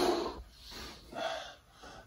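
A man breathing: two short, faint breaths about half a second apart, taken while he holds a bodyweight stretch.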